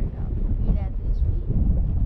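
Wind buffeting the camera microphone of a parasail in flight, a steady low rumble, with a short bit of voice under a second in.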